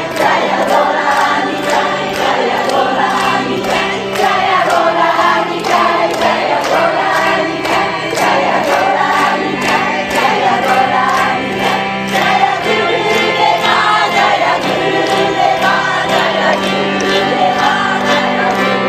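Group kirtan: many voices chanting a devotional song together over a harmonium's held drone. A quick, steady beat of handclaps runs through it.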